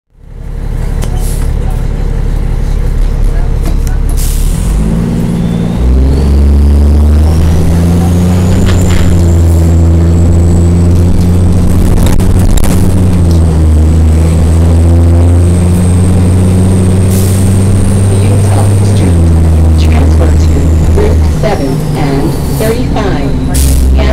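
Cummins M-11 diesel of a 2000 NABI 40-SFW transit bus, heard from inside the passenger cabin, pulling away and working up through the gears of its Allison WB-400R automatic. The engine note steps at each shift. A thin high transmission whine climbs with road speed, holds, then drops away as the bus slows near the end.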